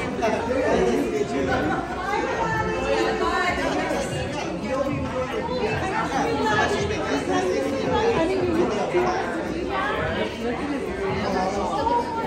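Crowd chatter: many people talking over one another at once, steady throughout, in a large room.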